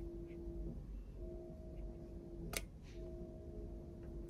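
A faint steady hum-like tone that breaks off briefly twice, with a single sharp click about two and a half seconds in.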